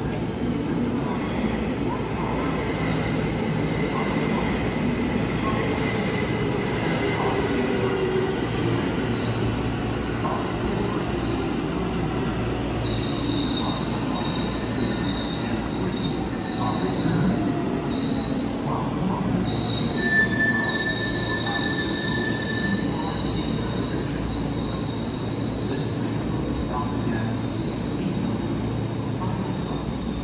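Train noise on a station platform: a steady rumble with thin, high squealing tones from the rails or running gear that come and go. A high whine comes in about halfway through, with a second, lower one briefly about two-thirds of the way in.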